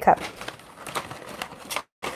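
Light clicks and taps of small plastic items, K-cup coffee pods among them, being handled on a tabletop, with a sharper tick near the end.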